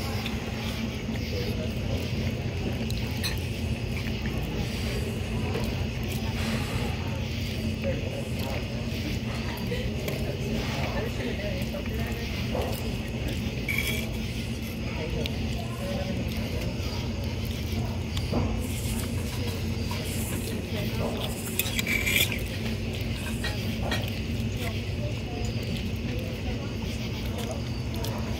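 Dining-room ambience: a murmur of other diners' voices over a steady low hum, with a few clinks of a metal fork against a plate.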